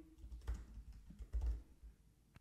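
Soft, irregular keystrokes of typing on a computer keyboard.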